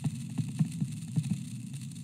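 Low steady hum with faint, irregular ticks of a stylus tapping and stroking a touchscreen while a word is handwritten.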